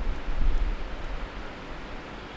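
A pause in speech: steady background hiss with a low rumble, the room noise picked up by the lecture microphone.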